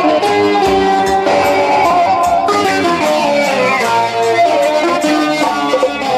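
Live music led by an electric guitar playing a busy, melodic plucked line, loud and continuous.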